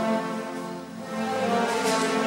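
Mandolin and guitar orchestra, with double basses, playing a slow piece. The sound thins out briefly about a second in, then swells again.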